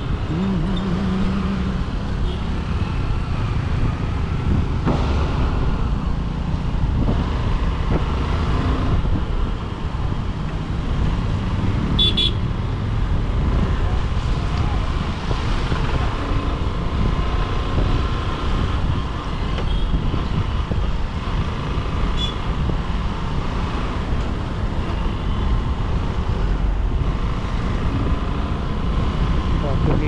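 Motorcycle riding through city traffic: steady engine and wind rumble on the onboard mic, with the noise of cars and buses around it. Short horn beeps sound at the start and again about twelve seconds in.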